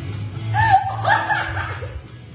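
A young woman laughing briefly, over background music.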